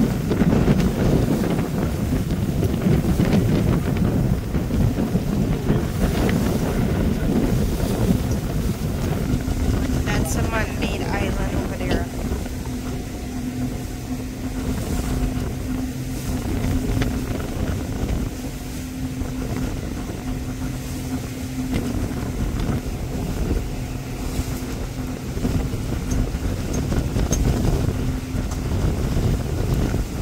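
A small motorboat's engine running steadily as the boat crosses choppy water, with wind buffeting the microphone. A steady engine hum stands out from about ten seconds in, and the overall level eases slightly after that.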